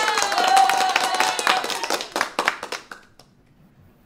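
Sound effect of clapping, played in by the host, with a long held tone over it that slowly drops in pitch. It fades out about three seconds in.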